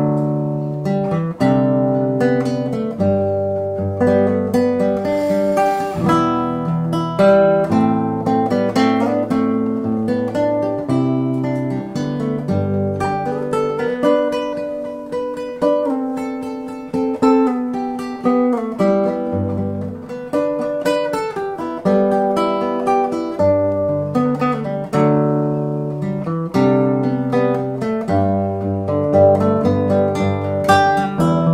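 Nylon-string classical guitar played solo and fingerpicked: a lively tune of quick plucked notes over moving bass notes, with no pauses.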